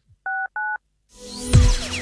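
Two short identical telephone keypad (DTMF) tones, the same key pressed twice, followed by a rising whoosh that ends in a hit about one and a half seconds in: sound effects in a radio station promo.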